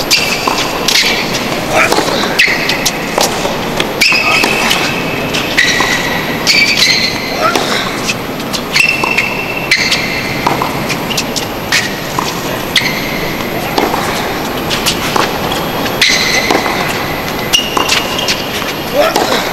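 Tennis balls struck with rackets every second or two in a baseline rally on a hard court, with short high sneaker squeaks between shots. Crowd chatter underneath throughout.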